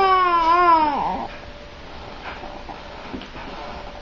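A baby's long, drawn-out sung coo: one held, slightly wavering tone lasting just over a second, then only faint small sounds.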